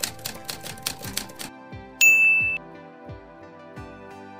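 Typewriter sound effect over soft background music: a quick run of key clicks for about a second and a half, then a single bell ding about two seconds in, the loudest sound, ringing for about half a second.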